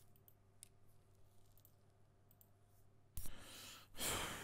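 Faint computer mouse clicks over a low steady hum, then a short, louder burst of noise near the end.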